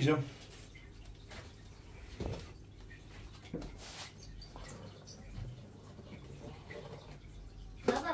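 A few faint knocks and scrapes as a branch of aquarium driftwood is pulled and shifted by hand among the other roots in the tank, over a low steady room background.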